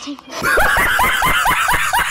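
A man laughing loudly in rapid, rhythmic bursts, each 'ha' rising in pitch, about five a second, starting about half a second in.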